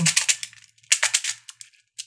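Plastic beads of a Hasbro Atomix moving-bead puzzle clicking and rattling in their tracks as its rings are turned. The sound comes in two quick runs of clicks, one at the start and one about a second in.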